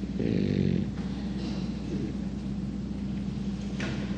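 A pause in speech: a short low hesitant murmur from a man's voice in the first second, then a steady low hum, with a single faint click just before the end.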